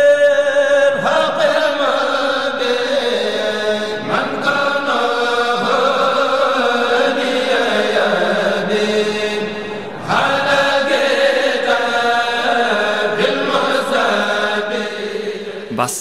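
Islamic religious chanting: a voice holding long, wavering notes. It pauses briefly just before ten seconds in, then a new phrase begins.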